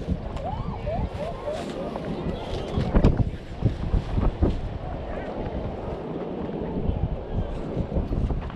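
Wind buffeting the microphone over the wash of water around a small boat at sea, with a louder thump about three seconds in. Faint voices come through in the first couple of seconds.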